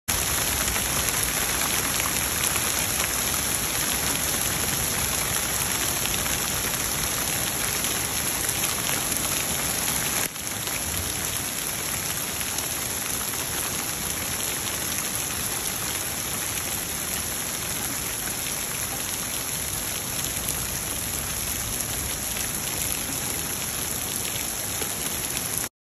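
Heavy rain mixed with small hail coming down on a wooden deck and lawn, as a steady, dense downpour. About ten seconds in, the sound drops out for a moment and comes back a little quieter.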